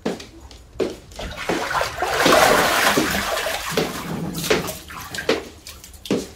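Water splashing and sloshing in an inflatable paddling pool as a person moves in it and lifts a leg out, with a few short splashes at first, then a loud, continuous splash for a few seconds in the middle.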